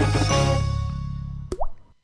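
Jingle music thinning out and fading away, then a single cartoon water-drop plop with a quick upward sweep in pitch about one and a half seconds in.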